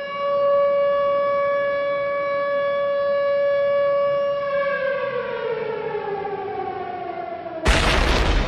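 A siren-like sound effect: one steady tone holds its pitch for about four and a half seconds, then slides down in pitch as if winding down. A sudden loud burst of noise cuts it off near the end.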